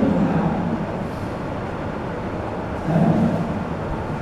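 Steady low background rumble of a lecture room during a pause in the talk, with a short stretch of a man's indistinct voice about three seconds in.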